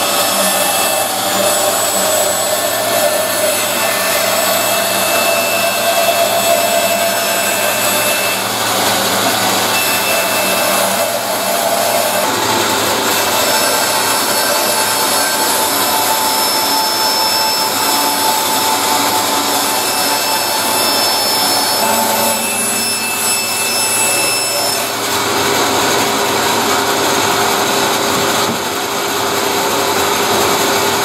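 Floor-standing bandsaw running and cutting a long curve through a wooden sheet, a steady sawing noise throughout.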